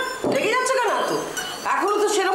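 Speech: a voice talking with strongly rising and falling pitch, ending in a longer wavering stretch. Nothing else stands out.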